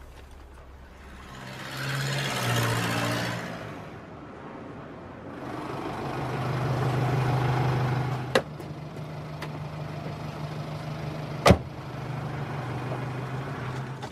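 Road traffic passing by: one vehicle swells and fades about two to three seconds in, another around seven seconds, over a steady low engine hum. A single sharp knock comes about eleven and a half seconds in.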